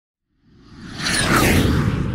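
A whoosh sound effect that swells up out of silence over the first second, with sweeping glides on top and a low rumble underneath.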